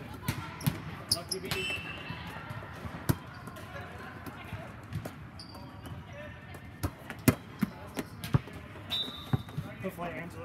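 Volleyballs being struck and bouncing on a sport-court floor: a scattered series of sharp smacks and thuds, the loudest about seven seconds in. Short high sneaker squeaks and players' voices sound underneath.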